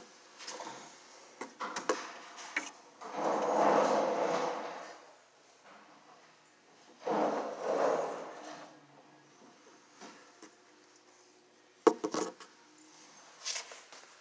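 Close handling noise against wooden and metal fixtures: two drawn-out rubbing scrapes of about two seconds each, with scattered clicks and a cluster of sharp knocks near the end.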